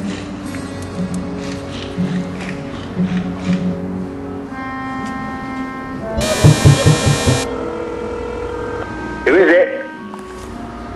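Background music, then about six seconds in a door-entry intercom buzzer sounds loudly for just over a second. A short voice follows near the end.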